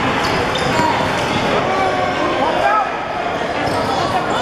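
Basketball being dribbled on a hardwood court during a youth game in a large indoor hall, with a few sharp bounces over a steady din of many voices from players and spectators.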